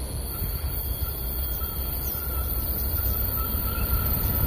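Low rumble of an approaching diesel-hauled passenger train, still out of sight round the bend, growing steadily louder, with a faint thin whine above it from about half a second in.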